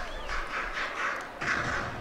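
Stadium crowd noise: a general hubbub of many voices from the grandstand, swelling a little near the end.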